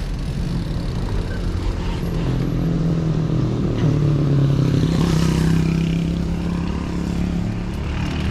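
A motor vehicle engine runs steadily close by, its hum shifting in pitch about four seconds in and growing louder toward the middle, over low rumble from riding.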